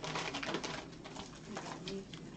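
Paper packaging rustling and crinkling as a mailed package is opened and its contents handled, with a few faint short low tones underneath.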